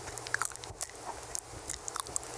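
Unintelligible whispering right into a microphone, full of small wet mouth clicks and lip smacks scattered irregularly through it.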